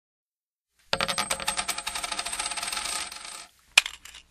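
Intro sound effect: a rapid, dense clatter of small clicks. It starts about a second in and stops after about two and a half seconds, then a single sharp hit comes near the end.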